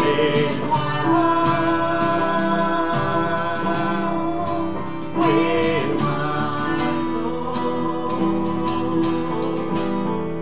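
Worship song played on a digital piano and a strummed acoustic guitar, with a woman and a man singing together over it.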